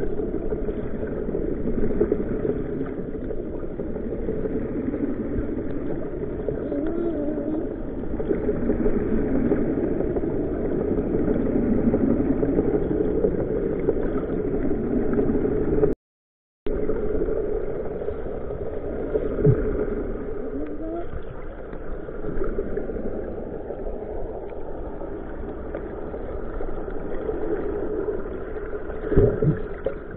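Steady muffled underwater rumble picked up by a submerged camera. The sound cuts out briefly about halfway through.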